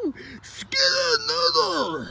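A person's voice giving a drawn-out, wailing moan that slides down in pitch several times, with a breathy hiss, starting about a second in and fading near the end.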